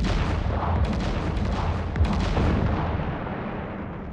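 Artillery salvo and explosions: a sudden heavy boom opening into a dense crackle of blasts over a deep rumble, another sharp blast about two seconds in, then the rumble fading away.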